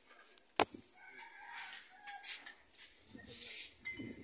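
A rooster crowing once in the background, a drawn-out call lasting about a second and a half. A single sharp click comes just before it, about half a second in.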